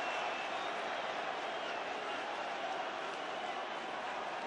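Football stadium crowd: a steady hubbub of many voices with no single sound standing out.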